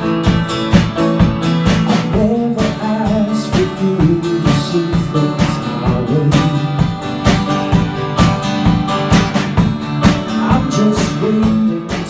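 Live band music: an acoustic guitar strummed over a drum kit's steady beat, playing an instrumental stretch between verses, with a voice gliding wordlessly over it in the middle.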